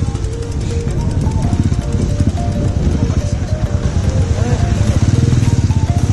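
A vehicle engine running close by, getting louder over the last couple of seconds, under background music with a melody.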